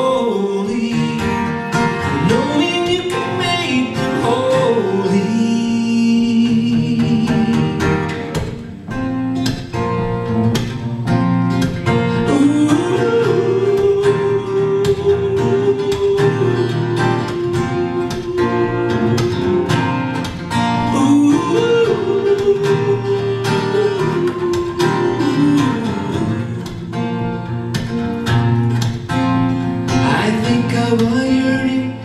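Live acoustic performance: a man singing to his own steel-string acoustic guitar, with some long held notes over steady strumming.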